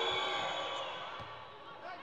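Arena crowd noise with held tones, fading steadily and growing quieter as a volleyball serve is about to be struck.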